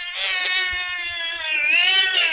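A cat's long, drawn-out yowl, one call whose pitch dips and rises again near the end.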